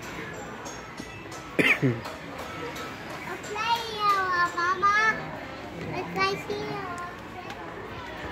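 A young child's high-pitched voice calling out: a sharp cry that falls steeply in pitch about one and a half seconds in, then a longer sing-song call with wavering pitch around four to five seconds, and a shorter call near six seconds.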